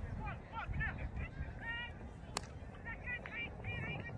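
A single sharp crack of a cricket bat striking the ball a little over two seconds in. Around it are distant shouted calls from the fielders and a low wind rumble on the microphone.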